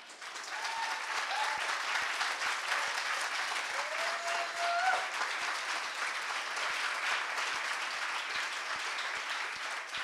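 Audience applauding: many people clapping, building quickly just after the start and then holding steady.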